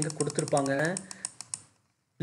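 Rapid, evenly spaced clicking of a computer mouse's scroll wheel, about ten ticks a second, heard with a man's voice and stopping about a second in.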